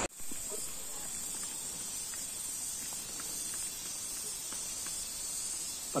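Quiet outdoor ambience in tropical woodland: a steady high-pitched hiss, with a few faint soft footsteps on a dirt path.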